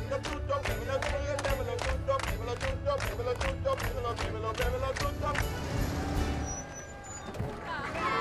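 A group of nuns singing a lively gospel-style song with steady hand-clapping, about three claps a second, over a low bass. The clapping and singing die away about five and a half seconds in.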